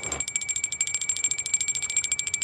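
Small metal hand bell shaken continuously, its clapper striking rapidly and evenly, about a dozen strikes a second, over a steady high ring.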